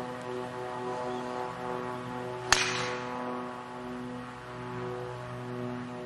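A golf driver strikes a ball off the tee: one sharp crack about two and a half seconds in. Sustained background music chords play throughout.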